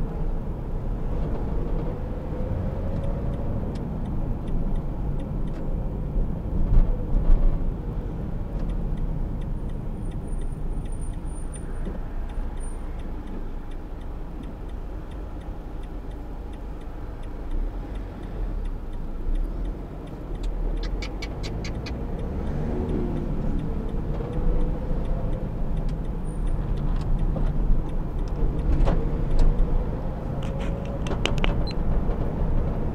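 Car cabin noise while driving slowly in traffic: a steady low engine and road rumble, with the engine note rising several times as the car pulls away.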